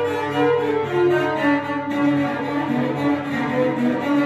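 Solo cello, bowed, playing a quick passage of short notes that change several times a second.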